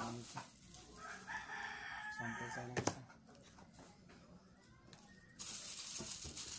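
A rooster crowing once, a held call of about a second, starting about a second in. A sharp click follows near the three-second mark, and plastic packaging rustles near the end.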